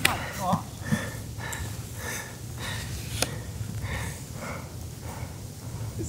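A sharp snap right at the start as a disc golf driver is ripped from the hand on a full drive, then a steady low rumble with faint murmured voices and a second small click about three seconds in.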